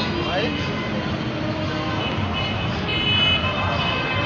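Busy street traffic mixed with the voices of a crowd, and a vehicle horn sounding briefly about three seconds in.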